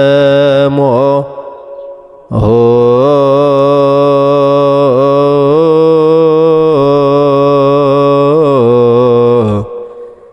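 A low male voice chanting a Ge'ez psalm verse in Ethiopian Orthodox liturgical style, holding long drawn-out notes with wavering melismatic ornaments. A short phrase ends about a second in, and after a brief pause one long unbroken phrase runs until just before the end.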